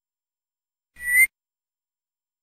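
A single short, whistle-like electronic chirp from the Tux Paint program's interface sounds, rising slightly in pitch and lasting about a third of a second.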